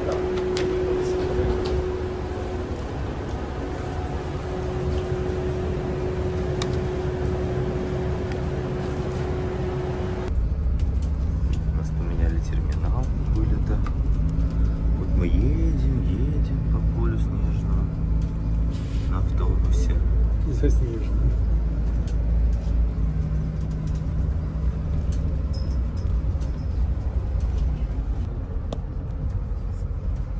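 Interior of an airport apron bus: a steady hum with one constant tone, then about ten seconds in a heavier low rumble and engine note as the bus drives across the airfield, with faint passenger voices in the background.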